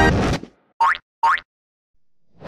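Two short cartoon "boing" bounce sound effects, each a quick rising glide, about half a second apart, for an animated bouncing ball. The last of the intro music fades out just before them.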